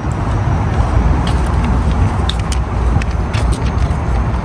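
Steady low outdoor rumble of car-park and traffic noise, with a few faint clicks.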